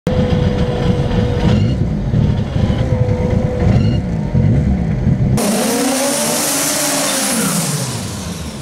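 Turbocharged VW Gol drag car's engine idling with a heavy, uneven pulse and a thin steady whine. About five seconds in it switches abruptly to a burnout: the engine is held high with the revs rising and falling, over the loud hiss of spinning tyres.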